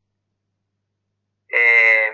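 Dead silence from a video call's noise gate, then about one and a half seconds in a man's voice over the phone line holding a long, steady hesitation vowel, "ehh", for about a second.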